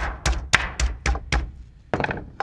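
The flat face of a metal meat mallet pounding a butterflied turkey breast through plastic wrap. There are six dull thuds at roughly four a second, a pause, and one more blow near the end. The meat is being flattened to an even thickness and its muscle fibres broken down.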